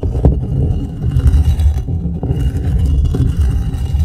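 A loud, low rumbling noise that starts abruptly and holds steady, with no speech over it.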